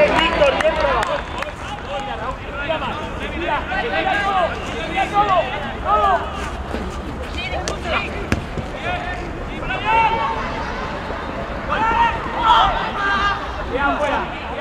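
Indistinct shouting and calling from footballers and spectators on an outdoor pitch, voices coming and going throughout, with a few short sharp knocks near the middle and a steady low rumble underneath.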